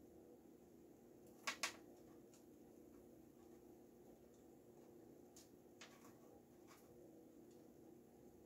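Near-silent kitchen with a steady low hum, broken by two quick sharp clicks about a second and a half in and a few fainter ticks later: a metal spoon knocking against a stainless mixing bowl while cookie dough is scooped out.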